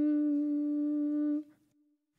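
A single steady held note lasting about a second and a half, then cutting off with a short fading tail. It sounds the starting pitch for a sung Amen.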